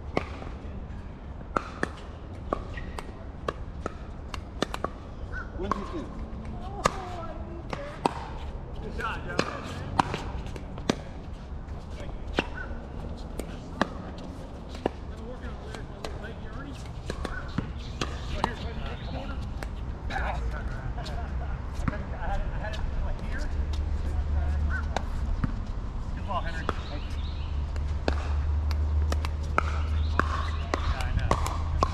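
Pickleball paddles striking a hard plastic ball and the ball bouncing on the hard court, a string of sharp pops at irregular intervals, about one a second.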